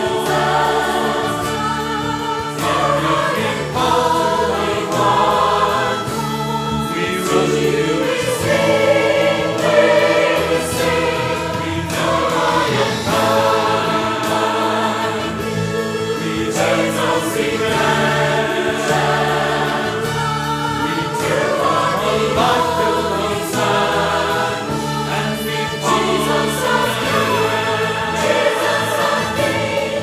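Small mixed church choir of men's and women's voices singing in parts, in continuous phrases over steady low notes.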